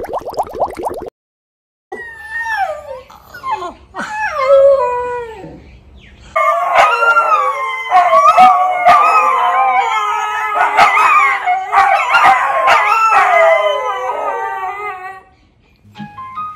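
Three young Siberian huskies howling. First a few separate howls that slide downward in pitch, then from about six seconds in all of them howl together in a loud, overlapping chorus that dies away near the end.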